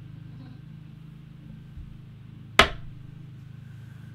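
Quiet room tone with a steady low hum, broken once by a single sharp click about two and a half seconds in.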